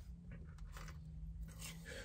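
Quiet car cabin with a faint steady low hum and a few faint soft ticks from chewing fries.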